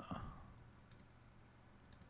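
Faint computer mouse clicks: two quick clicks about a second in and another near the end, over near silence.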